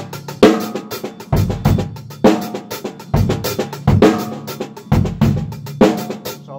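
Drum kit playing a typical 6/8 groove, the bass drum landing on the first beat, with a steady stream of stick strokes on cymbal and snare over it. The strong bass-drum hits come a little under once a second.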